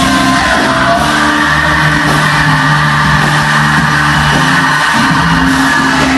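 Post-hardcore band playing live through a PA: electric guitars, bass and drums in a steady, loud full-band passage with held chords.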